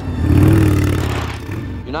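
A small motorbike engine speeding past close by, pitch rising then dropping away as it passes. It is loudest about half a second in and fades within a second and a half.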